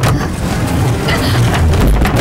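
A loud rumbling swell from the dramatic soundtrack. It starts suddenly and builds, heaviest in the bass, toward the end.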